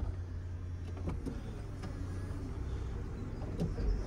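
Mercedes-Benz SL350 Vario hard top folding back into the boot: the roof's hydraulic pump running with a steady low hum and a few faint clicks from the moving mechanism.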